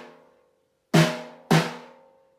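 Snare drum struck twice with drumsticks, about a second in and half a second apart, each stroke ringing and dying away; before them a silent beat as the previous stroke fades. This is the 'su' rest and the closing 'don don' of a taiko rhythm played on a snare.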